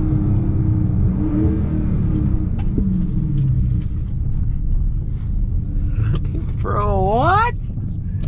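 Low rumble of a Dodge Charger Scat Pack's 6.4-litre HEMI V8 with road noise, heard inside the cabin as the car slows down from about 55 mph after a full-throttle run. Near the end a short voice exclamation rises and falls over it.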